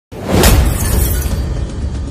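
News-intro sound effect of glass shattering, with a heavy hit about half a second in that fades out over the following second, over music.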